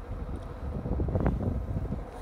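Wind buffeting the microphone outdoors: a steady low rumble with no clear other sound.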